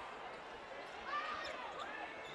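A basketball being dribbled on a hardwood court, heard faintly in the game broadcast's audio.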